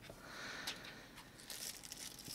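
Faint crinkling of thin plastic packaging being handled, with a small click partway through and a few light ticks near the end.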